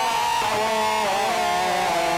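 Harsh noise from a ball-gag contact microphone worn in the mouth, its signal pushed through a chain of distortion pedals: an unbroken, loud, distorted drone whose several pitches waver and bend up and down together.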